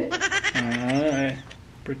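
A man's wordless vocal sound: a quick stutter of pulses running into a drawn-out, wavering tone, about a second and a half long.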